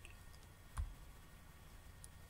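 A single computer mouse click a little under a second in, with faint room tone around it.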